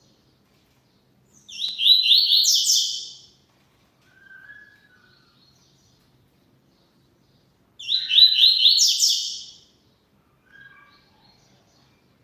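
Double-collared seedeater (coleiro) singing two fast, high, trilled song phrases of rapidly repeated notes. The first comes about a second and a half in and the second near two-thirds of the way through.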